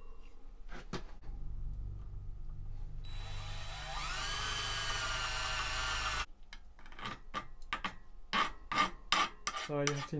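Power drill running and boring a hole through a metal bicycle handlebar for the throttle clamp's locating pin. The motor starts about a second in, grows louder and rises in pitch as the bit bites about three seconds in, then stops suddenly a little after six seconds. A few light clicks of handling follow.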